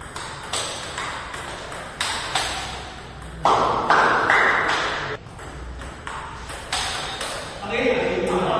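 Table tennis ball clicking back and forth off the paddles and table in a rally, the hits coming at uneven intervals of about half a second to a second and echoing in a bare hall.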